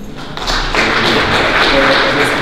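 Audience applauding, building up about half a second in and then holding steady.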